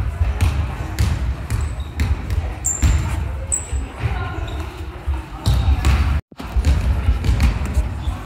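Irregular thumps and slaps of bare feet on a wooden gym floor and gloved punches landing during karate sparring, with voices in the background. The sound drops out briefly about six seconds in.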